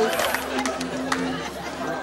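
Indistinct chatter of a busy restaurant dining room, with two or three sharp clicks.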